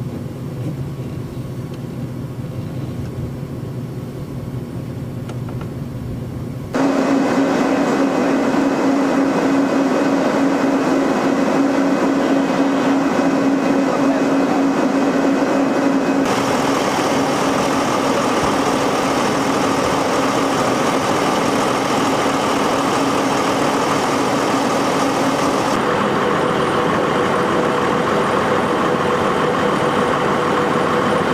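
Heavy engine running steadily, in several stretches that change abruptly: a quieter low hum for the first few seconds, then a much louder run with a steady drone. Near the end, a crawler bulldozer's diesel engine idling.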